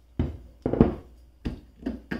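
Short knocks and thunks of a metal-cased solar inverter being set down flat on a wooden workbench and handled, about five in all, the loudest a little before the middle.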